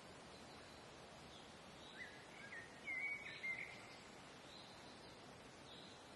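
Quiet outdoor ambience with a steady faint hiss. A bird gives a short run of chirping notes from about two to three and a half seconds in, the loudest sound, while a fainter, higher call repeats every second or so.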